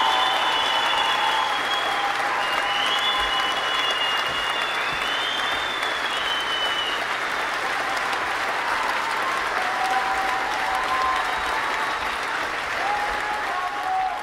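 Audience applauding steadily, with a few long, high calls heard over the clapping.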